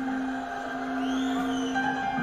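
Live concert band music with steady held chords and no singing.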